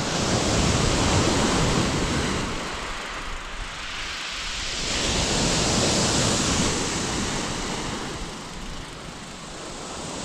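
Sea waves breaking on a steep shingle beach, the surf swelling twice and easing between, with some wind rumbling on the microphone.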